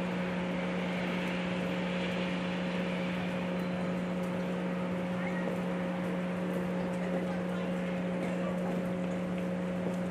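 Steady low hum with a fainter higher tone over an even hiss, unchanging throughout; no hoofbeats or other distinct sounds stand out.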